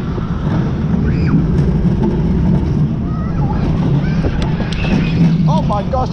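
A wild mouse roller coaster car rumbling steadily along its steel track at speed, with wind rushing over the microphone. A rider's voice breaks in near the end.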